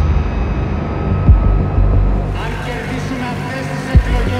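Low, steady drone of an ominous film-trailer score, with a deep boom hit about a second in. From about halfway, the noise of a large crowd fades in over it.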